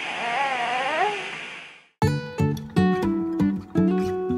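A five-month-old baby makes a short vocal sound that rises and falls in pitch, over a steady hiss, and the sound then cuts out. About halfway in, acoustic guitar music starts, with plucked notes.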